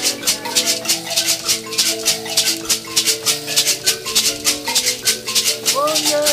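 A small ensemble of thumb pianos plays interlocking plucked notes over a pair of gourd shakers, which keep a steady, quick rhythm.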